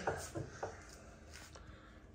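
Quiet room tone with a few faint light clicks and rustles in the first second and again about one and a half seconds in.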